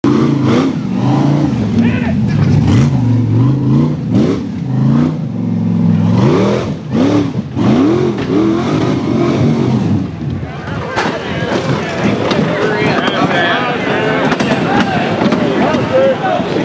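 Rock bouncer buggy's engine revving hard at full throttle, its pitch surging up and down again and again, with sharp knocks. From about ten seconds in, spectators' shouting voices rise over it.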